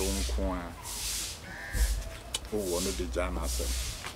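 A man talking in two short spoken phrases, one near the start and one about two and a half seconds in, with a steady low rumble underneath.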